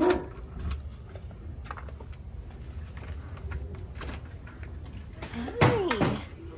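Keys and a front-door lock being worked: a sharp click at the start, then small metallic clicks and rattles. Near the end the door opens with a louder clatter and a brief whine.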